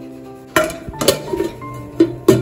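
Steel cookware clinking twice, a lid being handled over a metal kadhai, about half a second and a second in, over steady background music.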